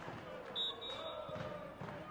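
Women footballers shouting and screaming in celebration right after a goal, with a brief high-pitched referee's whistle about half a second in.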